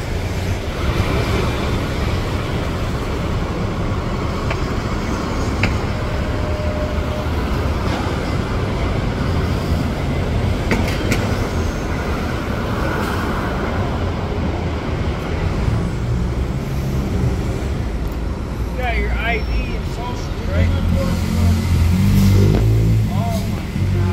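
Street traffic: a steady rumble of bus and car engines with tyre noise. Near the end a diesel coach bus's engine comes in louder and close.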